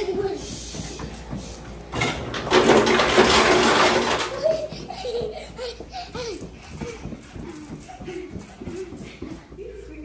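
Children's voices, with a loud burst of noise about two seconds in that lasts about two seconds.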